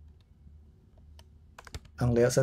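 Faint keystrokes on a computer keyboard: a few separate clicks, then a quick run of them near the end, as a word in the code is retyped.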